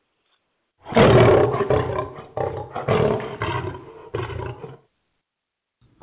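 Lion roar sound effect, played as a show stinger: one loud roar about a second in, then a few shorter, weaker roars that die away just before five seconds.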